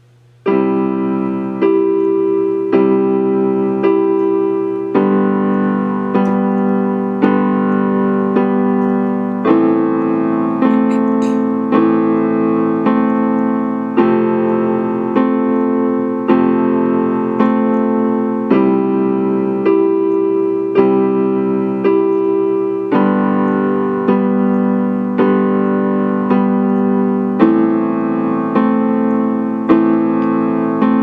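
Piano playing a slow, even pattern of repeated chords, struck about every three-quarters of a second and beginning about half a second in.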